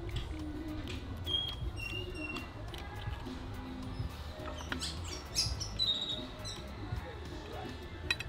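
Birds chirping in short, high calls, with a few sharp clinks of a fork against a plate a little past the middle, over soft background music.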